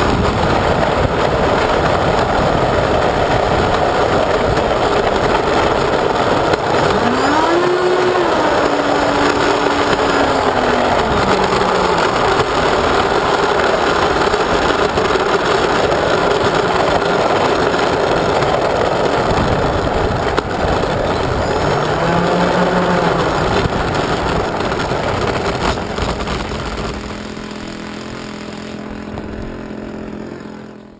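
Electric ducted fans of a radio-controlled A-10 model jet running as it taxis: a loud, steady rushing whine. Its pitch rises and falls twice as the throttle is worked. Near the end it drops to a quieter, steady hum as the fans are throttled back.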